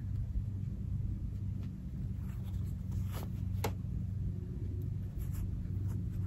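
Cotton fabric squares with pinked edges rustling softly as they are leafed off a stack one by one, with a couple of brief brushing sounds about three seconds in and another near the end.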